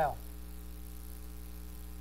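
Steady low electrical mains hum, with a man's voice ending a word at the very start.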